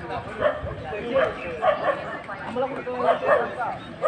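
Background chatter of people's voices, the words unclear.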